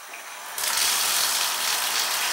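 Bathtub faucet turned on: about half a second in, water starts rushing from the tap with a loud, steady hiss.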